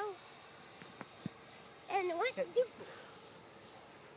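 A cricket trilling: one thin, high, unchanging note that fades near the end. A short spoken remark cuts in about halfway through.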